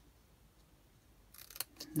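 Small craft scissors snipping notches into a strip of cardstock. It is quiet for about the first second, then a few short snips come near the end.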